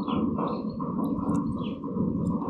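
Small birds chirping, repeated short notes, over a steady low background noise.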